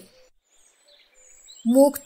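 A short, almost silent pause with only faint background sound, then a woman's voice narrating in Bengali starts up near the end.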